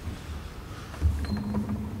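Low rumble of room noise, with a few faint creaks and clicks and a low bump about a second in.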